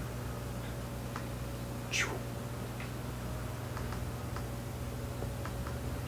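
Room hum with a few faint, scattered computer-mouse clicks while a file is picked from a dialog, and one brief falling swish about two seconds in.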